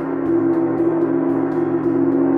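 Chau gong played in a soft continuous roll with two felt mallets: a steady, dense wash of overlapping sustained tones, strongest low in the middle range, with light mallet strokes about four times a second.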